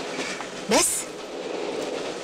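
A man says one short word, "bas", over a steady background noise that runs throughout.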